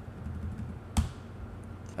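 A single sharp computer-keyboard keystroke about a second in, with a few much fainter key ticks, over a faint low hum.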